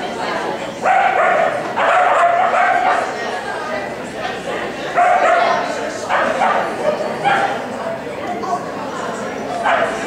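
A dog barking and yipping repeatedly in loud bursts as it runs an agility course.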